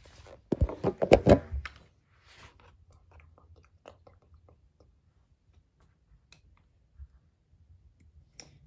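Handling noise from a plastic model airliner and its parts: a burst of crunchy plastic clattering about half a second in, lasting about a second, then faint scattered clicks and taps.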